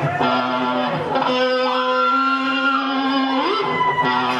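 Amplified electric guitar played live, holding long sustained notes with slow pitch bends up and down.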